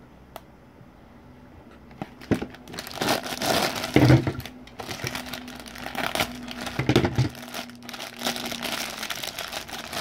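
Thin clear plastic bags crinkling and crackling as they are handled and opened to free tiny miniature pieces. The rustling starts about two seconds in and goes on in uneven bursts, loudest around four and seven seconds.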